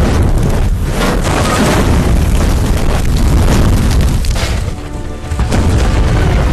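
Film soundtrack of loud, continuous booming rumbles, like fire and explosions, mixed with the background score, dipping briefly near the end.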